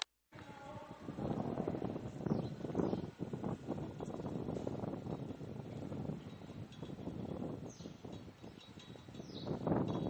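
Wind buffeting a camcorder microphone outdoors: an uneven, rumbling noise, with two faint high squeaks near the end.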